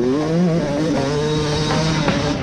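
Yamaha YZ250 two-stroke single-cylinder motocross engine running at high revs under throttle, its pitch wavering slightly but holding mostly steady.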